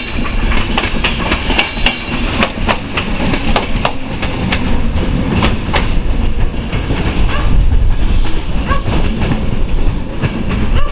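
Passenger train rolling slowly through a station, its coach wheels clacking irregularly over rail joints and switches above a steady low rumble. The rumble grows louder about seven seconds in, and a few short high squeaks come near the end.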